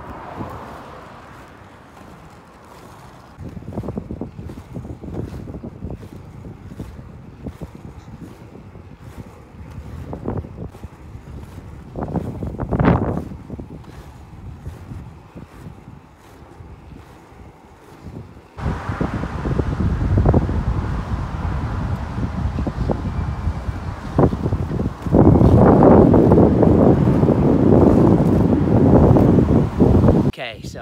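Skate wheels rolling over rough tarmac, with wind buffeting the microphone; the rumble grows louder partway through and is loudest over the last few seconds, with occasional small clicks.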